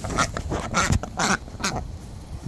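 Khaki Campbell ducks giving a quick run of short quacks, about seven in a second and a half, which stop near the end.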